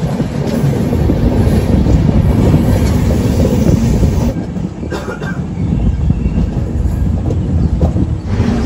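Passenger train running along the track, heard from the coach doorway: the wheels rumble and clatter steadily on the rails, with a short dip in loudness about halfway through.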